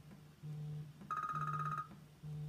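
Electronic tones: a low steady tone pulsing on and off about once a second, joined about a second in by a higher, buzzy, fluttering tone that lasts under a second.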